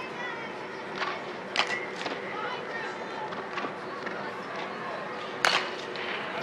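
A baseball bat striking a pitched ball: one sharp crack near the end, over faint background chatter from spectators.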